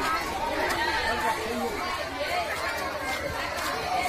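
Many children chattering at once in an overlapping babble of voices, with no single voice standing out.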